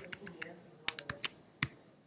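Laptop keyboard typing: a handful of quick, irregularly spaced keystrokes as a short search term is entered.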